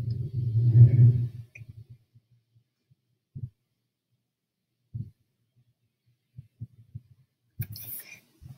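A deep rumble for the first second and a half, then single deep thuds spaced a second or more apart, from a dinosaur documentary's soundtrack playing on a computer.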